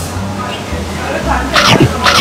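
A man's voice: two short, breathy vocal bursts about half a second apart, each falling in pitch, sneeze-like.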